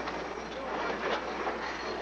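Wind and water rushing past a 12-metre yacht heeled under sail: a steady, even rush of noise.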